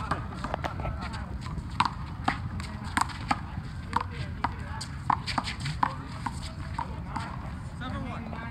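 Rubber handball rally: a rapid series of sharp smacks, about two a second, as the ball is struck by hand and bounces off the wall and pavement. Voices over a low city background.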